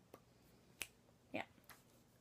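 Near silence broken by three or four faint, short clicks spread across two seconds.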